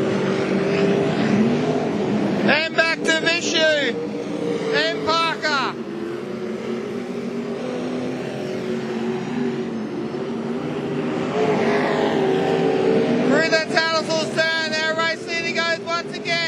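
Several sprint cars' V8 engines running at racing speed around a dirt oval, a steady layered drone, with louder rising-and-falling bursts as cars pass close about three seconds in, around five seconds, and again near the end.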